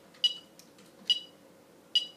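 Yamaha electronic metronome beeping at 70 beats per minute: three short, high clicks a little under a second apart, each with a brief ring.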